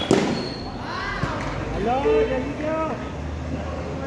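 A single sharp knock right at the start, followed by men's voices talking for a couple of seconds.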